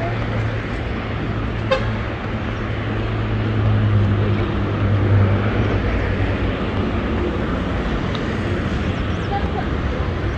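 Street traffic noise, with the low hum of a vehicle engine close by for the first several seconds, then easing off.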